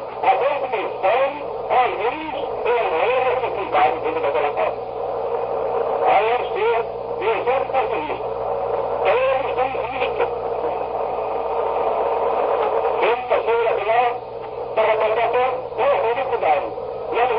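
A man preaching in a poor-quality 1964 recording: his speech runs on but is mostly indistinct, under a steady hiss and a low hum.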